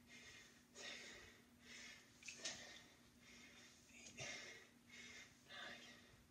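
Faint, rhythmic breathing of a man under exertion during band knee drives: a short, forceful breath roughly every second, over a faint steady hum.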